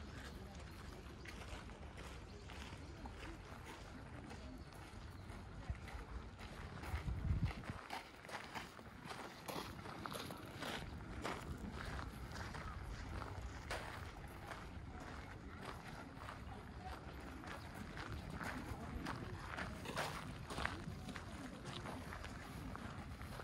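Footsteps crunching on loose gravel at a steady walking pace, about two steps a second, with people's voices in the background. About seven seconds in there is a brief low rumble, the loudest moment.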